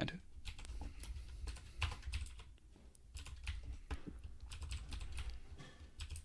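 Computer keyboard being typed on: irregular key clicks in short runs over a faint low hum.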